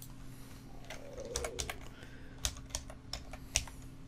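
Typing on a computer keyboard: a short run of about eight irregularly spaced keystrokes spelling out a single word, over a faint steady low hum.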